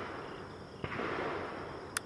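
Steady hiss with a faint click about a second in, then one sharp metallic click near the end: the Ruger American Pistol's trigger resetting as it is let forward, a reset that sits far forward in the trigger's travel.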